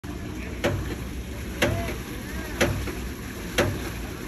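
Hydraulic ram water pump cycling: four sharp clacks about a second apart as its waste valve snaps shut. Each clack is the water-hammer shock that drives water up into the pump's air dome.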